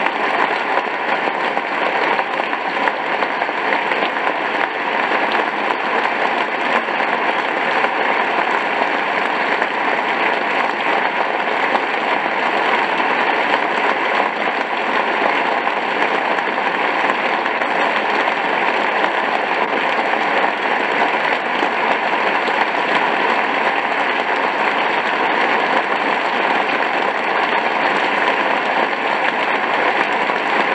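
Large theatre audience applauding: many hands clapping in a dense, steady wash that does not let up.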